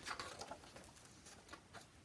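Page of a hardcover picture book being turned: a brief faint paper rustle and flap at the start, followed by a few soft clicks of the page and cover.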